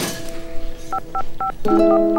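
Mobile phone keypad tones being dialled: a quick run of short two-tone beeps starting about a second in, over steady background music. A brief rushing sound comes at the very start.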